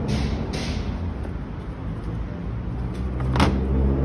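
City street traffic: a steady low rumble with a nearby engine hum. Short rustling bursts come near the start, and a single sharp knock about three and a half seconds in.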